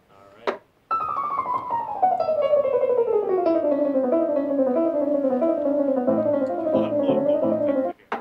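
Piano music starts suddenly about a second in with a long run of notes stepping downward. It settles into a repeating melody, joined by low bass notes near the end, and cuts off abruptly.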